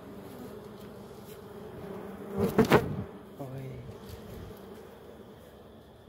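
Buzzing of a dwarf honeybee colony clustered on its open comb, a steady low hum, with two loud bumps about two and a half seconds in.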